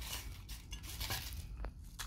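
Crisp fried papdi crackers being picked out of a glass bowl by hand: faint crackling and rustling with a few small clicks.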